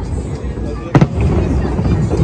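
Aerial fireworks going off: one sharp bang about a second in over a steady low rumble.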